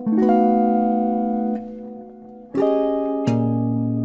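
Clean electric guitar playing chord voicings: an F7 chord struck at the start rings for about a second and a half. A second chord comes in a little past halfway, and then a third with a low bass note.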